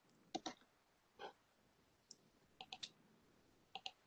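Faint computer mouse clicks, about nine at irregular spacing, some in quick pairs, as an image on screen is navigated.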